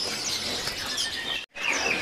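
Many small caged songbirds chirping and twittering at once, short high calls overlapping one another over a general background noise. The sound cuts out abruptly for a split second about one and a half seconds in.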